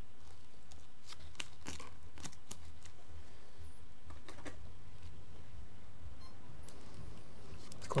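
Faint rustling and light clicks of compost and small plastic plant pots being handled as seedling soil blocks are potted on and firmed in by gloved hands, over a steady low hum.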